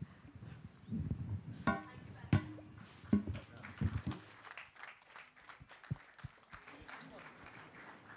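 Indistinct, off-microphone speech from the stage with a few sharp knocks of microphone or table handling in the first half, then a fainter patter of small clicks.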